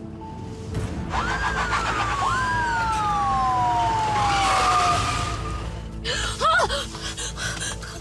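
Police car siren wailing in two overlapping sweeps that rise quickly and fall slowly, over dramatic background music. About six seconds in, a couple of short loud cries cut in.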